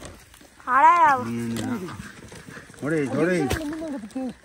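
Children's voices calling out in long, wordless exclamations whose pitch rises and falls: one about a second in, another about three seconds in.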